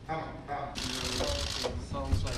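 People's voices talking in a room, with a burst of fast, dense clicking lasting about a second near the middle.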